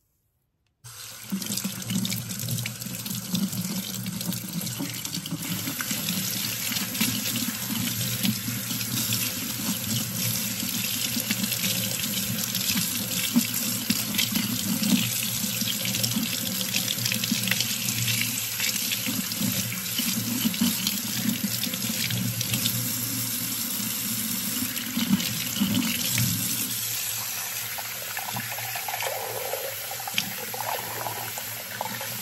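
Kitchen tap running into a stainless steel sink, a steady rush of water splashing over a hand and a comb, starting about a second in. Near the end the sound changes as the stream runs into a glass measuring cup.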